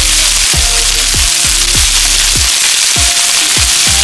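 Chicken pieces and minced garlic sizzling in butter in a frying pan over medium-high heat, with a steady hiss. Background music with a steady beat plays over it.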